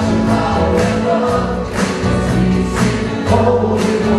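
Live worship band playing: electric guitars, bass, drum kit and keyboard, with singing over the top.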